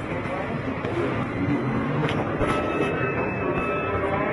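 Indoor crowd ambience: indistinct chatter of many people with background music, a couple of short clicks about two seconds in.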